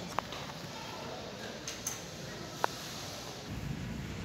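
Steady background noise of an indoor shopping mall, with two short sharp clicks: one just after the start and one a little past the middle.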